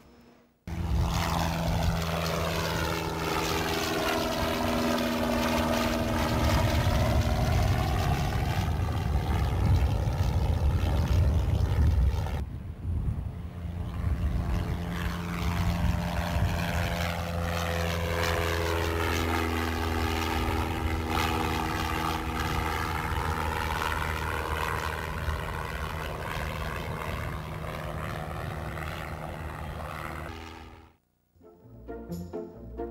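Piston-engine propeller airplane droning steadily as it flies past, the drone sweeping down and back up in pitch. It starts just under a second in, dips briefly about twelve seconds in, then passes again.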